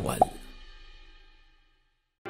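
A short pop sound effect about a fifth of a second in, over the fading tail of background music, which dies away to silence about one and a half seconds in.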